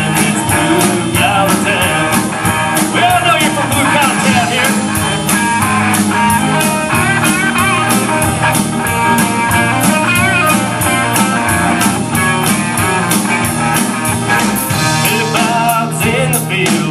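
Live country-rock band playing through a PA: a drum kit keeping a steady beat under acoustic and electric guitars.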